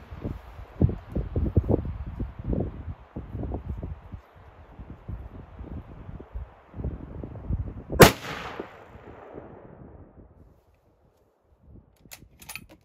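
A single shot from a Tikka .30-06 bolt-action rifle about eight seconds in, sharp and loud, followed by a rolling echo that fades over about two seconds. Before the shot there are low thumps and rustling.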